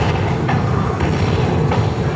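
Buffalo Link slot machine's bonus-payout sound effects as its win meter counts up credit by credit, with a few low thumps over a steady low din.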